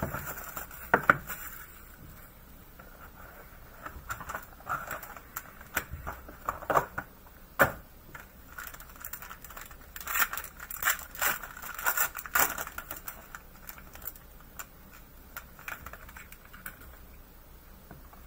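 Plastic shrink wrap and a plastic card-pack wrapper crinkling and tearing as a trading-card hobby box is unwrapped and its pack handled, in irregular bursts of crackles and clicks, busiest in the middle and again around two-thirds of the way through.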